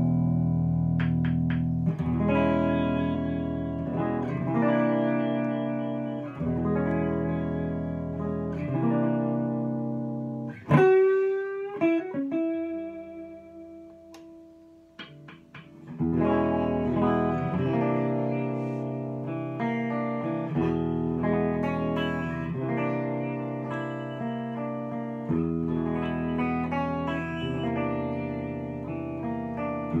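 A 1967 Framus 5/132 Hollywood electric guitar played through a Tone King Gremlin amp, in an improvised blues-jazz jam of chords and single-note lines. About eleven seconds in the pitch glides quickly upward. Then a single note rings more quietly for a few seconds, and full chords come back at about sixteen seconds.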